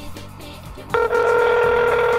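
A steady electronic telephone tone comes through a flip phone's speaker about a second in and holds, as a call to a paging service connects. Background music runs underneath.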